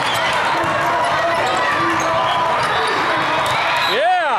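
Indoor volleyball rally: a few sharp knocks of the ball being struck and bouncing, over the steady din of many voices and shouts in a large hall.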